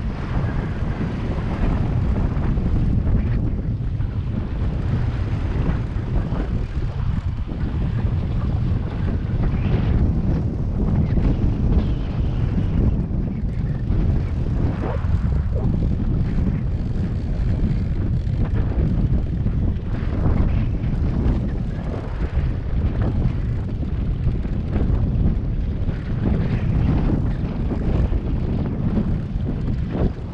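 Wind buffeting the microphone over a steady low rumble from the boat's Suzuki outboard motor and the sea against the hull.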